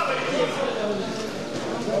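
Ringside voices of spectators and coaches talking and calling out during a boxing bout, several at once with no clear words.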